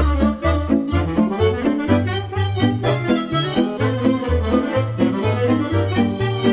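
Instrumental introduction of a Romanian folk dance song, played by a folk band over a steady bass beat of about two notes a second.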